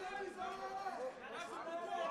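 Indistinct chatter of several people talking at once, overlapping voices with no clear words.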